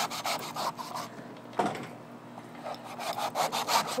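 Chef's knife sawing back and forth through the fibrous husk of a coconut: a run of quick, repeated rasping strokes.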